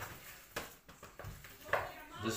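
Hands mixing raw chicken pieces with seasoning powder in a plastic tray: soft, irregular handling noises and light clicks.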